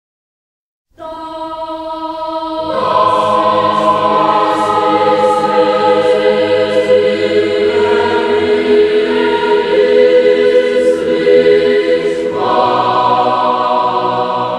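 A choir singing sacred music in slow, sustained chords. It comes in about a second in and grows fuller a couple of seconds later.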